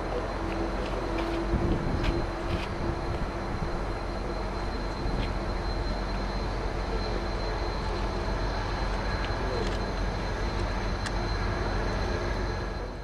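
Delta Airbus A330's twin turbofan engines running at taxi power as the airliner taxis close by: a steady rush of jet noise with a constant high whine over a low hum.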